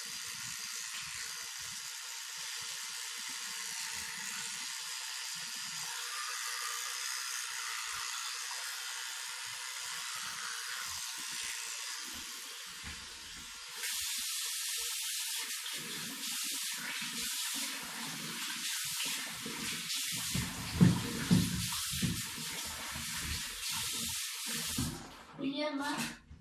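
A rotating electric toothbrush running steadily during brushing. About halfway through, a louder splashing hiss takes over, typical of a tap running into a bathroom sink as the mouth and brush are rinsed, with irregular knocks and splashes.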